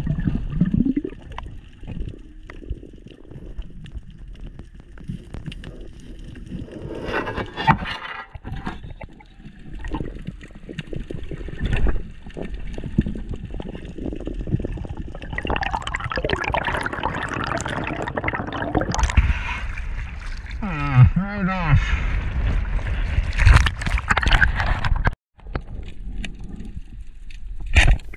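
Underwater sound picked up by a diver's camera: steady water rush and gurgling, louder in the second half, with a brief wavering, voice-like sound a little past two-thirds of the way through.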